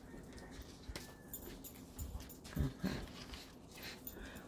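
A few brief, faint voice-like sounds, about two and a half to three seconds in, over quiet room noise.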